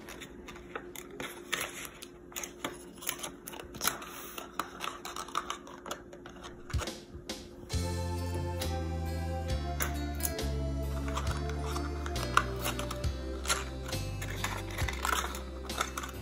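Paper crinkling and small clicks from hands taping a folded paper cube closed. About halfway through, background music with low bass notes comes in.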